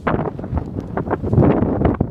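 Wind buffeting a phone's microphone in gusts, strongest in the second half.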